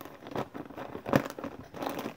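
Plastic baby-wipe packaging crinkling and rustling in irregular bursts as a wipe is pulled out, the loudest crinkle about a second in.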